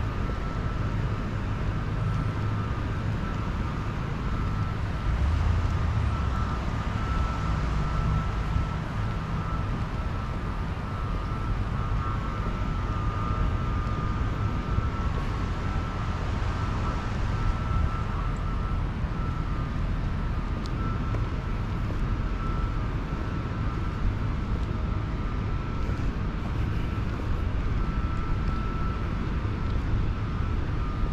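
Wind rumbling on the microphone over a steady outdoor rush of noise, with a faint steady high tone running through it.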